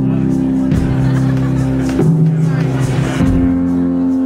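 Live band playing amplified music on electric guitars, bass and drums, with sustained chords that change about every second and a half.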